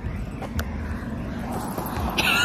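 Steady low wind rumble and rolling noise from riding a sit-down rental scooter as it gets under way, with a couple of light clicks about half a second in.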